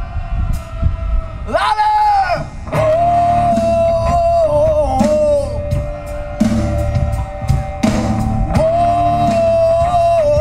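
Live rock band playing: a singer holds long sung notes, each lasting a few seconds, over bass guitar and a light drum beat, with a short rising vocal glide about two seconds in.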